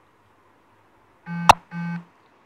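Two short electronic beeps with a buzzy tone, each about a third of a second long, starting about a second and a quarter in, with a sharp click between them.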